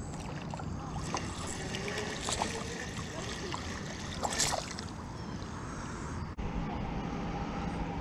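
Steady outdoor noise with a low rumble, and a few light clicks and knocks as a hand works a spinning reel's handle.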